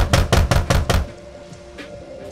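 Rapid knocking on a door, about six knocks a second, that stops about a second in, over a quiet sustained music bed.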